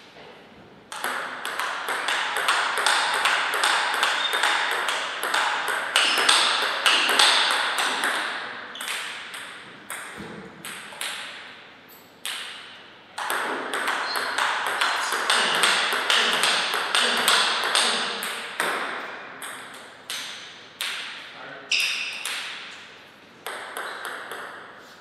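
A table tennis ball clicking back and forth off the paddles and table in a steady rally, a few hits a second, each hit echoing. The rally breaks off briefly about twelve seconds in, then resumes, and the hits come more sparsely near the end.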